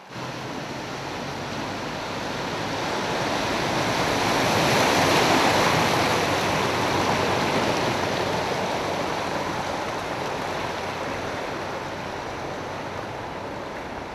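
Floodwater from a burst water main rushing over the street asphalt, a steady rush that swells about five seconds in and then eases off.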